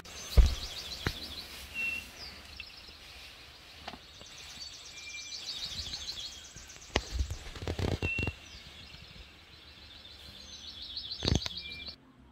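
Birds singing in forest: repeated rapid high trills and short clear whistled notes, several at a time. A few low thumps break in, the loudest about a second before the end.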